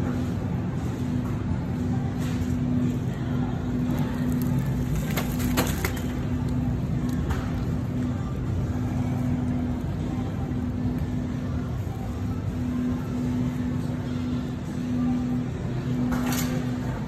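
Shopping cart rolling over a tiled floor: a steady low rumble from the wheels, with a few sharp rattles of the wire basket around five seconds in, over a steady hum.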